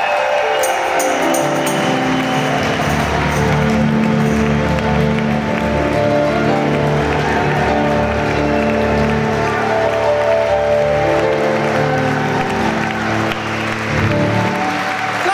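Audience applauding over electric keyboards holding long sustained chords, with no singing.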